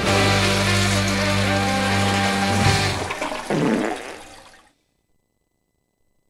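A blues-rock band holds its final chord, which ends about two and a half seconds in. About a second later a toilet flush sound effect follows and fades out over about a second.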